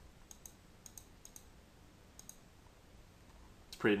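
Computer mouse button clicking several times in the first three seconds, light clicks that mostly come in quick pairs, as the image is zoomed out.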